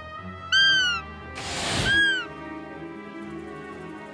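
Hand-held roe deer call blown twice, two short squeaky calls that each rise and then fall in pitch, about a second and a half apart, imitating a roe deer to lure deer in. A whoosh swells between the two calls, over steady background music.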